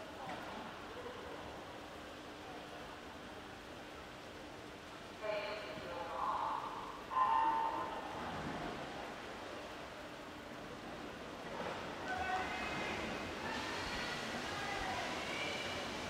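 Quiet pool-hall ambience with a faint steady hum. About five seconds in a brief voice is heard, and about seven seconds in a short electronic start tone sounds, the signal that sends the relay's first swimmers off the blocks. From about twelve seconds crowd noise builds as the race begins.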